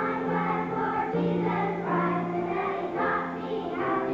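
A kindergarten children's choir singing a song together, holding notes in short phrases of about a second each.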